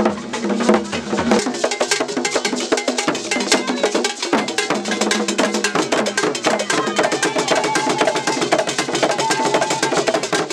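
Traditional Ghanaian hand drums played in a fast, dense rhythm, with other struck percussion ringing over them.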